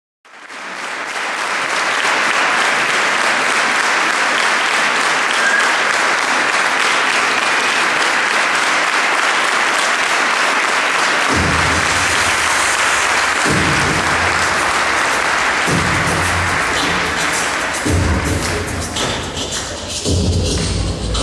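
An audience applauding steadily. About eleven seconds in, a low a cappella bass voice starts under the applause in repeating phrases about two seconds long. The applause dies away near the end.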